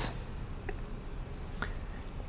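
Quiet room tone in a small room during a pause in speech, with two faint short clicks about a second apart.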